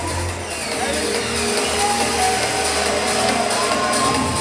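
Trance music from a DJ set played loud over a club sound system, heard from the dance floor, with a synth line gliding slowly down in pitch.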